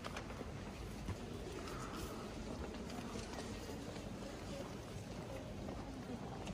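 Steady, quiet background hum of a large stone church interior, with a few faint clicks.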